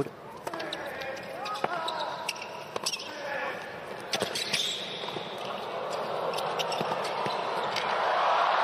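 Tennis rally on a hard court: a series of sharp racquet-on-ball strikes and gliding shoe squeaks. Crowd noise builds into cheering and applause in the last few seconds as the point is won.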